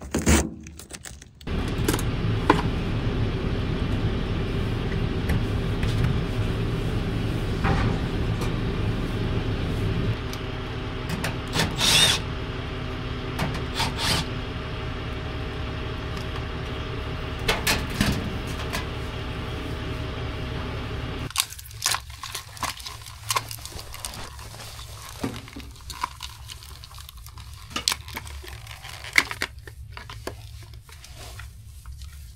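A small electric pump motor runs steadily with a low hum, starting about a second and a half in and cutting off suddenly about two-thirds of the way through. Light clicks and handling knocks follow.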